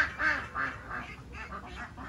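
Ducks quacking in a quick run of short calls, about four a second, loudest at the start and tailing off: the flock clamouring to be fed after hearing its keeper.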